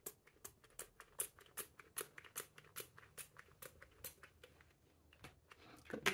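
Finger-pump spray bottle spritzing oil onto a guitar fingerboard: a quick, faint run of about twenty short spritzes, four or five a second, which stops about four and a half seconds in.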